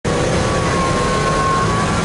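City street traffic noise: a motor vehicle's engine running close by, a low steady rumble with a thin, steady high whine over it.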